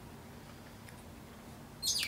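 Low, steady room noise, then one short high-pitched squeak that falls in pitch just before the end.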